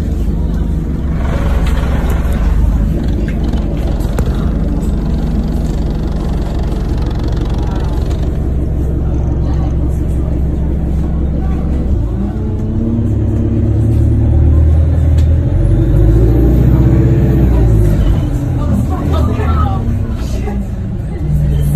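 A road vehicle's engine running close by, a steady low rumble that grows louder and deeper about twelve seconds in, with indistinct voices in the background.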